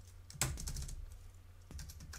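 Typing on a computer keyboard: a quiet, irregular run of key clicks, the sharpest about half a second in.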